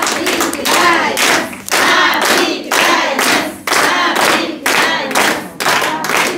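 A group of women clapping their hands in a steady rhythm, with voices singing along.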